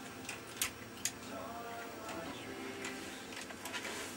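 Motorized faders on an SSL mixing console travelling under motor drive: a faint whir in the middle, among several sharp clicks.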